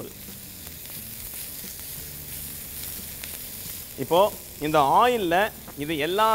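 Ivy gourd (kovakkai) pieces sizzling steadily as they roast in hot oil in a steel pan. A man speaks over the sizzle in the last two seconds.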